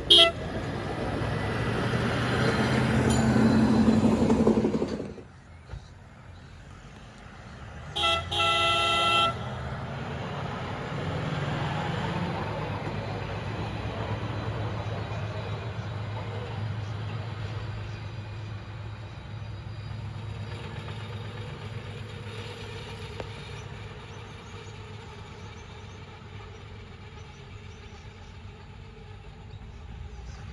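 Hi-rail utility vehicle travelling on the rails: a short horn toot at the start and its engine and wheels growing louder as it passes. A second horn blast of about a second comes near 8 s, then its steady running sound slowly fades.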